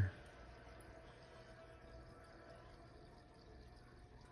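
Faint, steady water noise of an aquarium's air-driven filter, bubbles rising and breaking at the surface, with a low steady hum under it.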